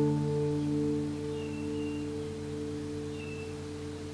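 The last chord of an acoustic guitar piece ringing out and slowly fading away.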